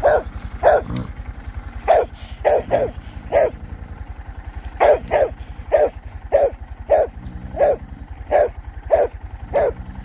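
A dog barking over and over, about fifteen barks with short gaps between them, while it chases a dirt bike. A low, fast engine putter from the bike runs underneath.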